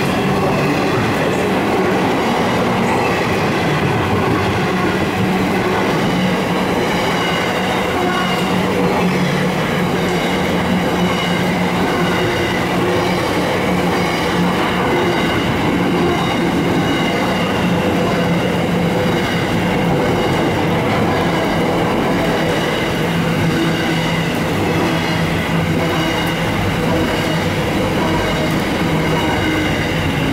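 Loaded container wagons of an intermodal freight train rolling past at speed: a loud, steady rumble of steel wheels on rail, with steady humming and ringing tones running through it.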